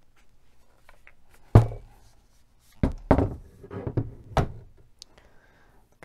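A Chinese Type 88 Hanyang rifle being turned over on a wooden table: one sharp thunk about one and a half seconds in as it is set down, then several lighter knocks and bumps of the stock against the tabletop.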